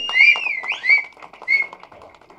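Whistling that rises and falls in pitch, followed by a shorter whistle about a second and a half in, over scattered hand clapping, in welcome.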